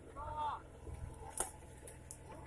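A 4x4 off-road vehicle's engine running low and steady as it creeps down a steep slope. A short high voice exclamation comes near the start, and one sharp snap about halfway through, like a stick breaking.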